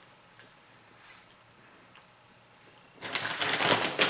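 Near quiet for about three seconds, broken by one faint, short rising squeak about a second in. Then a plastic bag of shredded mozzarella crinkles loudly as it is picked up and shaken over the pizza.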